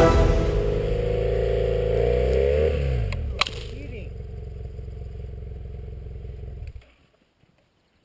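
Background music that fades through the first few seconds, with a low steady part running on until it cuts off about seven seconds in, followed by near silence.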